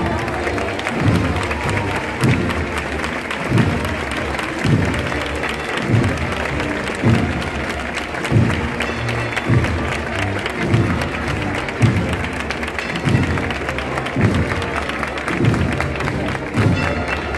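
A wind band plays a slow processional march, with a bass drum beat about every second under sustained brass chords, over crowd clapping and chatter.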